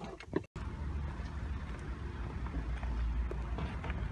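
Wind buffeting the microphone outdoors as a steady low rumble, with faint footsteps on pavement; a brief dropout about half a second in.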